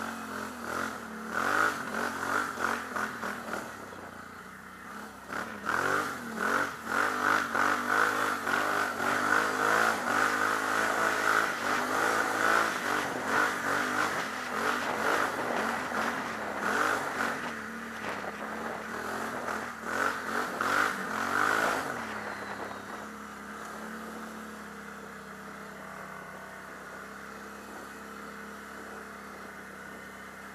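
Can-Am Outlander XXC 1000 ATV's V-twin engine revving up and down under throttle while riding. About 22 seconds in, it eases off to a quieter, steadier low run.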